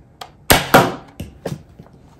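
A Nerf Rival blaster firing a foam ball: a sharp thunk about half a second in, a second loud knock right after it, then a few lighter taps.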